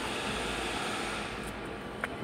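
Steady ambient noise, an even rushing hiss with no distinct events, slightly louder in the first part.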